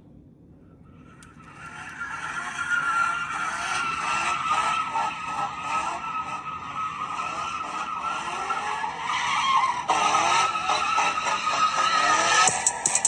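Opening of a rap music video playing through laptop speakers: a noisy, car-like intro that sounds like tyres skidding and engines rather than a clear beat. It starts about a second and a half in and grows louder toward the end.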